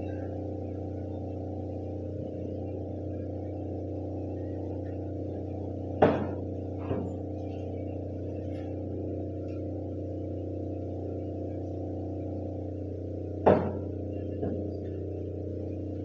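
Soft, steady held instrumental chords, with two sharp knocks about seven seconds apart, each followed by a fainter knock.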